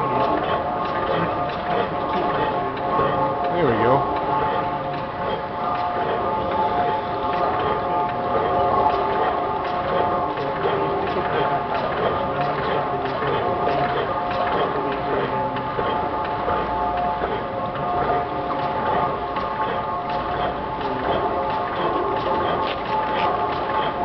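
Small Crossley overhung-crank slide-valve gas engine running steadily on natural gas, with a continuous clatter of close ticks from its valve gear and crank.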